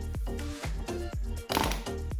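Background music with a steady beat, with a brief rustling noise about one and a half seconds in.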